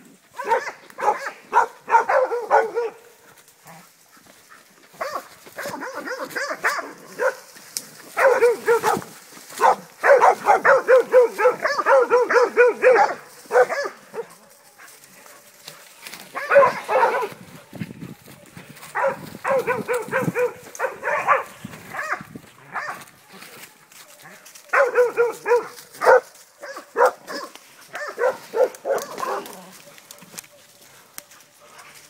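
Catahoula hog dogs barking in rapid bursts of several barks each, with pauses of a second or a few seconds between bursts.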